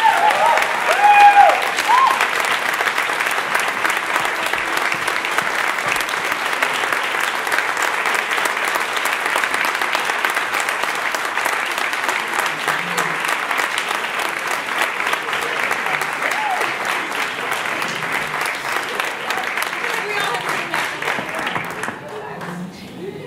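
Audience applauding, with shrill whoops and cheers in the first couple of seconds; the clapping goes on steadily, easing a little and dying away at the very end.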